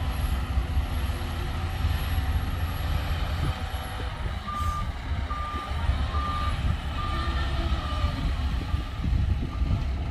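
Heavy diesel machinery rumbling steadily. From about halfway through, a reversing alarm sounds a row of short, even beeps, about one a second, as the loaded dump truck backs up.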